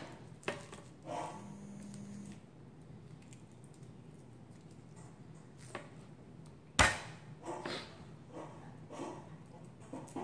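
Quiet handling noise as garlic cloves are peeled by hand on a plastic cutting board, with one sharp knock about two-thirds of the way through and a few softer taps after it.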